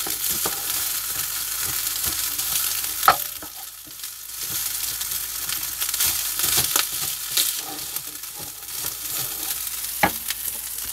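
Rice and mushrooms sizzling in a frying pan on a gas hob while a wooden spatula stirs and scrapes them, with many short taps against the pan. A sharper knock comes about three seconds in, and the sizzle drops briefly after it.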